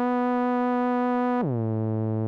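DJX10 digital subtractive synthesizer playing a preset: one bright, sustained note that slides smoothly down more than an octave to a lower held note about one and a half seconds in.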